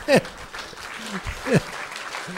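Audience laughter, with two short falling laughs standing out, one just after the start and another past halfway.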